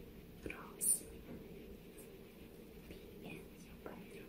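A woman whispering softly close to the microphone, with a short sharp hiss about a second in.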